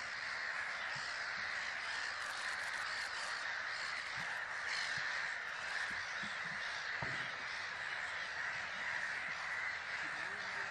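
A large flock of birds calling all at once, a dense, continuous chorus of overlapping calls with no single voice standing out.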